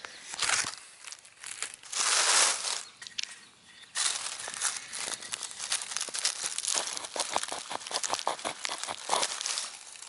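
Rustling handling noise in dry leaves, then from about four seconds in a flint flake scraping quickly back and forth against the edge of a wooden bow-drill fireboard, carving a notch in a run of short, scratchy strokes.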